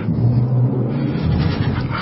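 A low, steady rumbling drone with a deep hum, from the background sound design under the dramatized reading.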